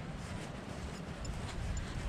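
Low, unsteady rumble of wind buffeting the microphone, over a faint rustle of walking across wet grass.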